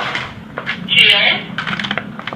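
Gloved hands handling gauze and its paper wrapping: a brief rustle about halfway through and a few light clicks near the end, with voices in the background.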